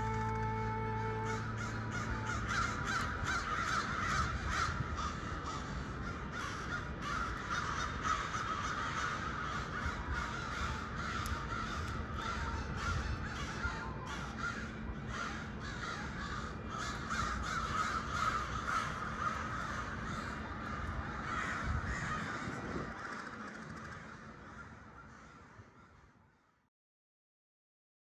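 Many birds calling at once in a dense, continuous chorus of harsh calls, fading out over the last few seconds.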